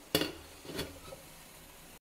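A sharp metallic clank as the aluminium idli steamer vessel is handled, followed by a couple of fainter knocks.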